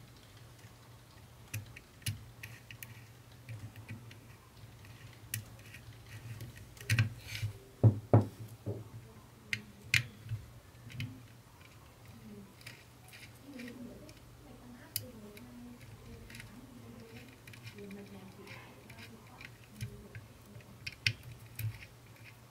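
Scattered clicks and taps of a small screwdriver and stripped wire ends being worked into the screw terminals of a Class D amplifier board, with a cluster of sharper clicks about a third of the way in and again near the end, over a steady low hum.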